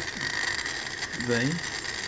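Small brushed DC motor running slowly on a low 555-timer PWM duty cycle, with a steady high-pitched whine and a light mechanical rattle.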